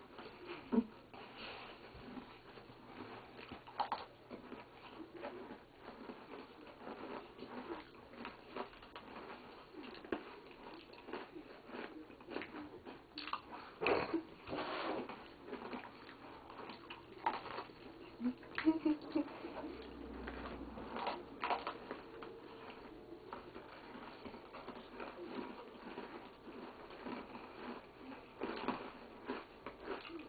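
People chewing mouthfuls of cream-filled Oreo cookies: irregular soft crunching, mouth smacks and small clicks, with a few louder clicks scattered through.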